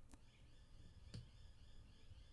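Near silence: faint room tone with two soft computer-mouse clicks about a second apart.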